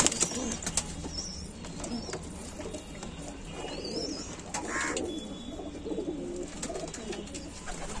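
Domestic pigeons cooing, a low burbling that runs on throughout. A sharp wing clap comes right at the start, and a few faint high chirps are heard early on and about four seconds in.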